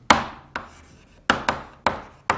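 Chalk writing on a blackboard: about five sharp taps of the chalk stick as the letters are formed, irregularly spaced, each fading quickly.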